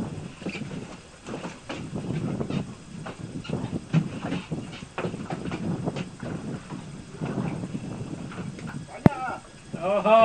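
Irregular knocks and clicks on a small fishing boat drifting at sea, with a single sharper click about nine seconds in, over faint voices.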